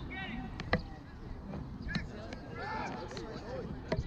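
Lacrosse players shouting and calling across the field, their voices scattered and fairly distant, with a sharp crack just under a second in and another near the end.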